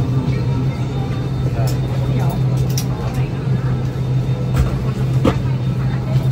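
Steady low hum of an airliner cabin's air system while parked with passengers aboard, under quiet passenger chatter and a few light clicks and knocks.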